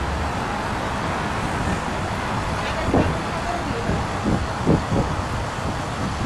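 Heavy road traffic passing close by: a steady rumble of slow-moving and idling car, van and lorry engines with tyre noise.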